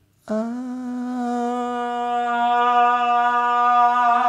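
A man's voice holding one long sung note at a steady pitch, starting soft and swelling gradually louder: a vocal coach demonstrating voice projection, growing the note from small while moving away from the microphone.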